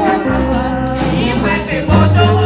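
A choir of women singing together in harmony, with shaken percussion keeping a steady beat and low bass notes held underneath.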